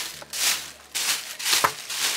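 Thin plastic bag crinkling and rustling as it is handled, twice, with a hand pressing into the mass of combed-out hair inside it.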